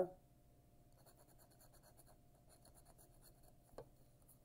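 Coin scratching the coating off a paper scratch-off lottery ticket: faint, quick rasping strokes, with one sharp tick near the end.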